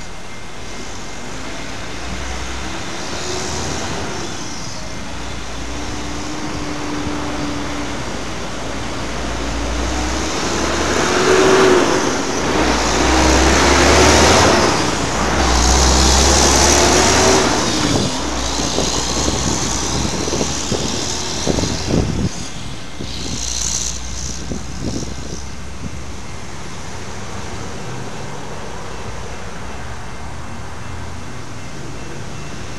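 Road traffic: a motor vehicle passes close by, loudest about midway, its engine note rising and falling. A run of sharp knocks follows.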